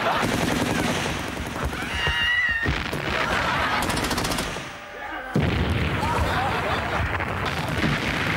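Battlefield sound effects: rapid machine-gun fire and explosions under voices. A sudden loud blast comes about five and a half seconds in.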